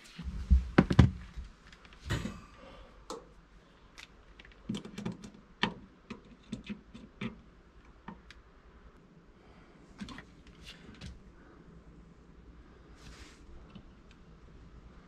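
Scattered clicks and light knocks of hands handling multimeter test leads and wiring, with a few heavy thumps in the first second.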